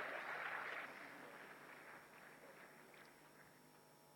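Audience applauding, the clapping fading out over the first couple of seconds to near silence.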